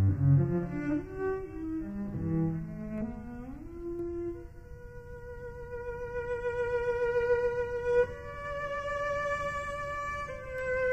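Solo cello playing a quick run of low notes, then sliding upward about three and a half seconds in to a long high note with vibrato that grows louder and steps up slightly near the end.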